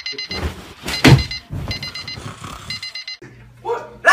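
Electronic alarm beeping in quick groups of short high beeps, with a loud thump about a second in; a sleeper is not waking to it.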